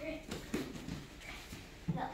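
Children's voices in a room, with a few light knocks and thuds as blocks are set down on a gym mat; the sharpest knock comes near the end.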